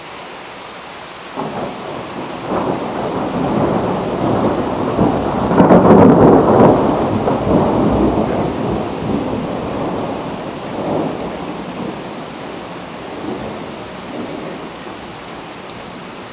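Thunder from a cloud-to-ground lightning strike no more than a mile away: it breaks in with sharp cracks a second or so in, builds to its loudest peak in the middle, then rolls on and slowly fades. Steady rain hisses underneath throughout.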